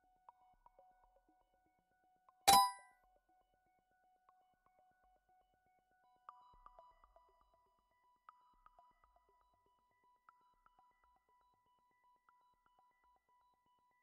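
A single bright electronic chime about two and a half seconds in, a quiz sound effect as the next question comes up. From about six seconds on, a countdown timer ticks faintly, about once a second, over a faint steady tone.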